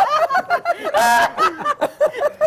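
Men laughing, with a louder, breathy burst of laughter about a second in and a few words of speech mixed in.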